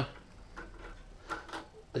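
A few light clicks as a plastic binding comb is pressed onto the metal comb-opening teeth of a Fellowes Starlet 2 comb binder, the clearest about a second and a half in.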